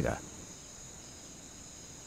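Crickets chirring faintly and steadily in the background, an even high-pitched trill that does not change.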